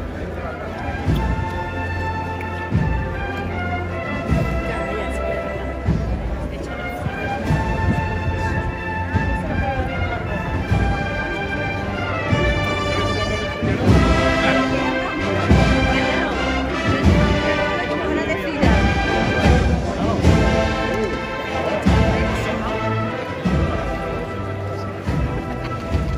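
A street band playing a processional march behind a Holy Week paso: a sustained melody over regular drum beats, swelling louder about halfway through.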